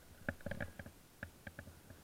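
Irregular muffled knocks and clicks, several a second, from the jolts of skiing over packed snow, carried into a body-worn camera through its housing and mount. The knocks are busiest early on and thin out near the end.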